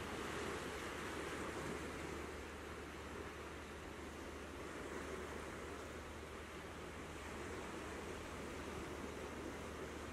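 Ocean surf on a rocky shore: a steady rush of breaking waves. A steady low hum runs underneath.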